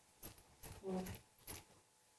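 Four faint clinks and taps of a glass jar of orange marmalade and a utensil as marmalade is spooned into a small saucepan.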